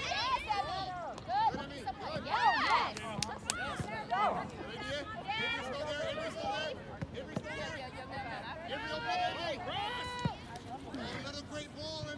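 Overlapping high voices of players and sideline spectators calling and shouting during play, a babble without clear words, with a couple of sharp knocks about three seconds in.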